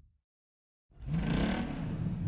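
A car engine revs up suddenly about a second in, its pitch rising and then easing off, after a short silence.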